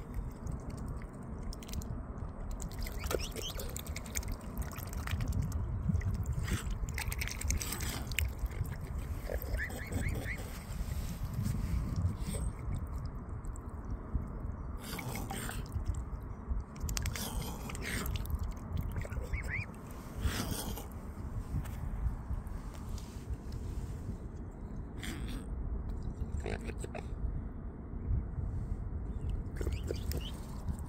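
Mute swans and cygnets feeding with their bills underwater in the shallows: irregular splashing, sloshing and clicking of water and bills, over a steady low rumble.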